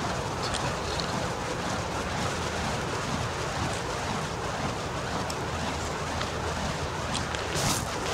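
Burning fire poi spun around, a steady rushing whoosh of the flames moving through the air, with a brief louder burst near the end.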